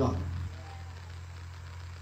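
A man's amplified voice finishes a word in the first half-second, then a pause in which only a steady low hum remains.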